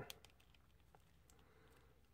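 Near silence: faint room tone with a few faint ticks from hands handling a plastic action figure.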